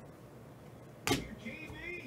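A stack of sleeved trading cards set down on a table: one sharp knock about a second in, with near quiet before it.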